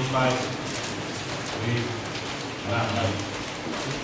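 A man's low voice speaking in short phrases with pauses between them, over a steady hiss of room noise.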